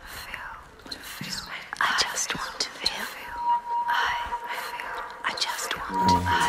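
Several people's whispered voices layered over one another as a vocal sound collage, overlapping breathy phrases. A steady high tone comes in about halfway through and holds under the whispers.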